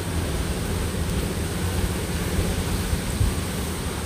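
Steady hiss of hot oil frying dried snakeskin gourami in a pan over a gas burner, with a low rumble underneath.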